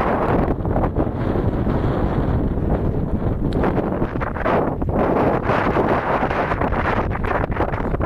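Wind buffeting the camera's microphone in gusts, a heavy rumbling roar.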